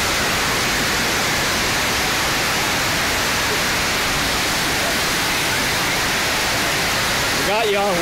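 FlowRider surf simulator's sheet of water rushing steadily over the ride surface: a loud, even rush of water with no break.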